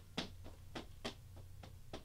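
Faint, quick slaps of a pair of floggers' falls striking a mannequin in a two-handed figure-eight pattern, a string of short strikes coming about every quarter second, over a low steady hum.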